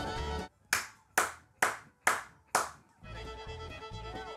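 Five sharp hand claps in an even beat, about two a second, as a Western dance gets under way. Fiddle-led dance music starts up about three seconds in.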